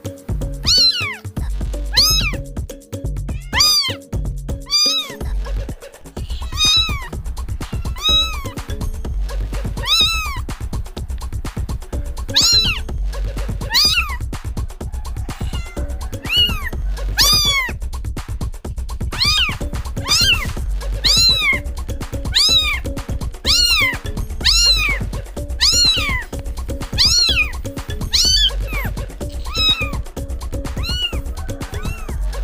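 Kitten meows repeating in a steady rhythm, about one and a half a second, each rising and falling in pitch. They sound over background music with a steady low beat that grows fuller about six seconds in.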